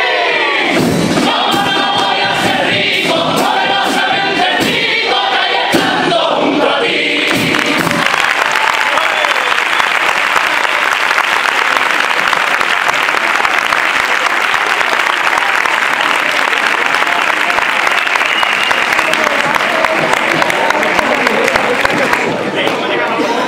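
All-male carnival comparsa choir singing the close of a cuplé in harmony, ending about seven or eight seconds in. The audience then applauds and cheers steadily for the rest of the time.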